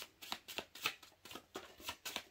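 A tarot deck being shuffled by hand: a steady run of soft card slaps, about five a second.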